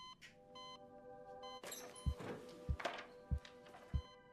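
Heart-rate monitor beeping, its beeps spacing out as the heart rate slows, under a soft music score. From about two seconds in, low thuds come about every 0.6 s.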